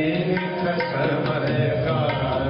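Sikh gurbani kirtan: a male raagi singing a hymn, accompanied by tabla strokes and bowed string instruments.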